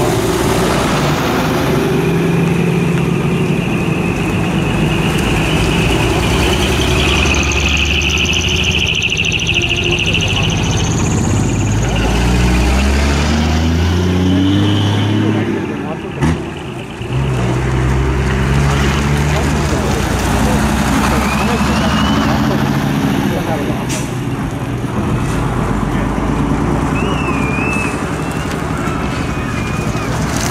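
Large coach buses' diesel engines running as the buses pull out one after another, the engine note rising as a bus accelerates about halfway through, with a hiss around a third of the way in.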